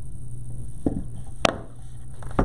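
Quiet handling of ribbon and a pipe cleaner on a wooden bow-making board, with a faint click a little under a second in and one sharp click about one and a half seconds in.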